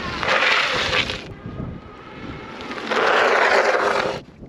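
Ride1Up Revv 1 e-bike's fat tires skidding on asphalt under hard braking from its four-piston hydraulic disc brakes. There are two hissing skids of about a second each, the second near the end.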